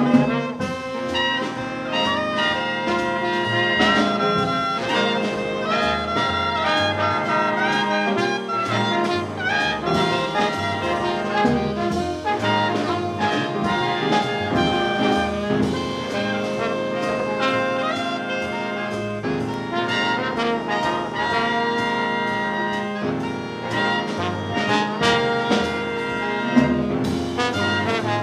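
A trombone improvising a jazz solo over a small jazz combo's accompaniment, with steady pitched lines, a low bass part and a running beat throughout.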